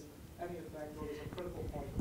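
Faint, indistinct speech from a person well away from the microphone, much quieter than the presenter's voice around it.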